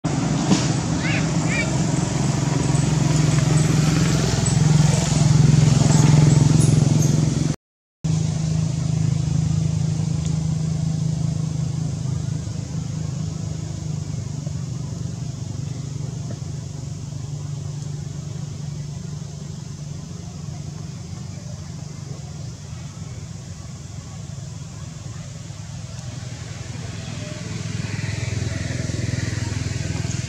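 Steady low hum of a motor vehicle engine running, with outdoor background noise and faint voices. The sound cuts out completely for a moment about eight seconds in.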